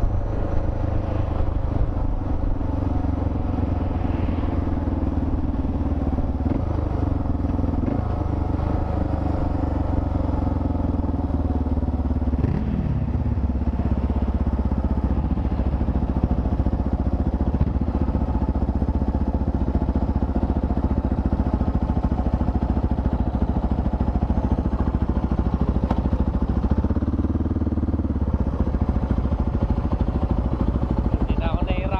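Motorcycle engine running steadily at low road speed, heard from the rider's own bike, with one brief rise and fall in pitch about twelve seconds in.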